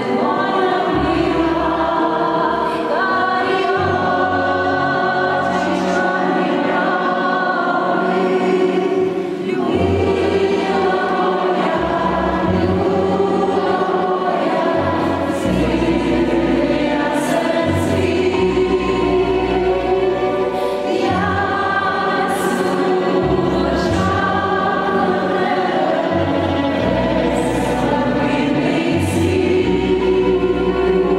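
A song sung by many voices together, carried over a steady instrumental accompaniment with a changing bass line.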